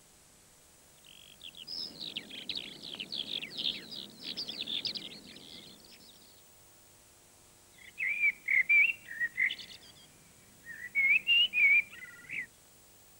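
A skylark singing a rapid, high, unbroken warble for about four seconds, then after a pause a blackbird singing two short fluting phrases.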